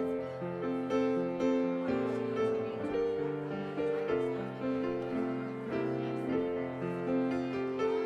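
Slow instrumental piano music of held chords and a simple moving melody, coming in suddenly right at the start.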